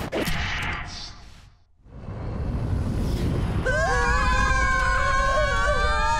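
Cartoon sound effects of a space capsule's atmospheric re-entry: a hiss fades out to near silence, then a low rumble builds. About three and a half seconds in, several boys start screaming together in one long, held yell over the rumble.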